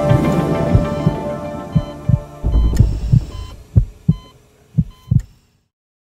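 Intro music dying away under a heartbeat sound effect: low paired thumps, lub-dub, about one pair a second, ending about five seconds in.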